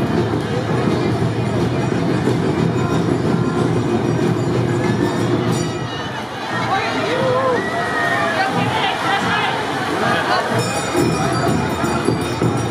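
Awa odori street-dance music from a passing troupe, with voices calling out over it and a crowd of onlookers around. The music and voices run on steadily, dipping briefly about halfway through, with calls rising and falling in the second half.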